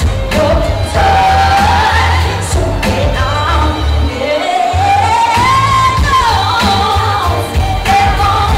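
A female lead singer sings a pop song live, with backing singers, over amplified accompaniment with a heavy bass beat. Her line climbs to a long high note around the middle and then falls away, and the bass drops out briefly about halfway through.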